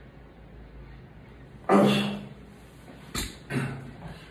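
A man's loud strained grunt of effort on a heavy dumbbell press rep, then a sharp thud as the 65 lb dumbbells come down, followed by a shorter grunt.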